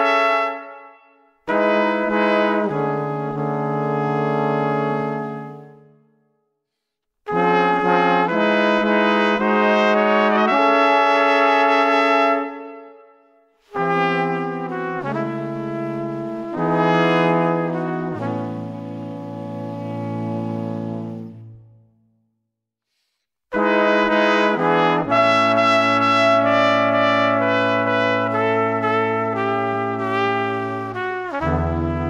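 Brass quartet of trumpets and trombones playing slow, held chords in phrases broken by short silences.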